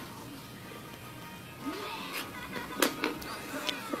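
Faint background music, with a few light clicks of a plastic Twister spinner arrow being knocked around by a cat's paw.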